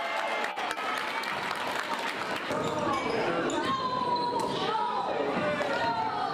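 A basketball bouncing on a gym's hardwood floor during a game, with a few sharp knocks in the first second, under players' and spectators' voices calling out.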